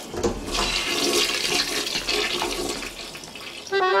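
Toilet flushing: a rush of water that swells about a second in and dies away over the next two seconds.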